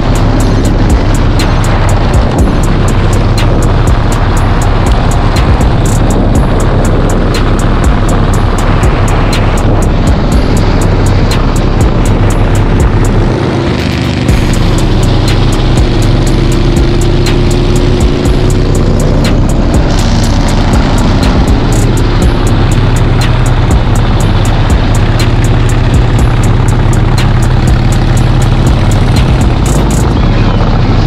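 Motorcycles riding on the road, engine and wind noise under background music. About halfway through, a motorcycle engine rises in pitch as it rides past.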